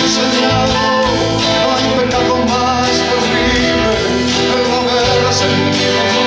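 A man singing a song in Spanish while strumming an acoustic guitar, performed live into a microphone; the music is loud and steady throughout.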